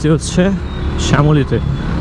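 A man talking over the steady low rumble and wind noise of a Suzuki GSX-R150 single-cylinder motorcycle ridden through city traffic.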